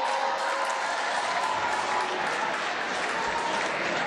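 Audience applauding steadily in a large hall, a dense patter of many hands clapping.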